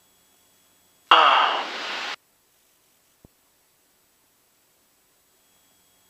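A brief burst of radio transmission, about a second long, that starts and cuts off abruptly as on a keyed aviation radio, followed a second later by a single faint click; otherwise near silence on the headset audio feed.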